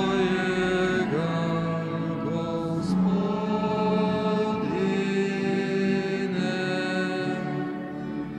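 Liturgical singing at Mass: voices holding long notes of a chanted hymn, each about a second long, several slid up into at the start.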